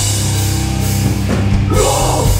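A heavy metal band plays live and loud, with distorted guitars over a pounding drum kit. A harsh shouted vocal comes in near the end.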